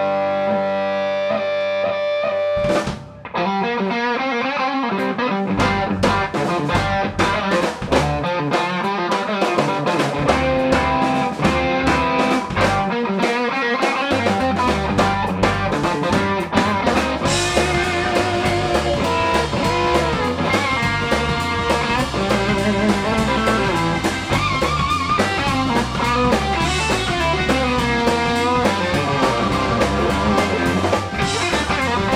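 Live band jam of distorted electric guitar, drum kit, electric bass and Hammond organ. A held chord stops short about three seconds in, then the band comes back in with drums and bass. In the second half, guitar lead lines bend and waver over the groove.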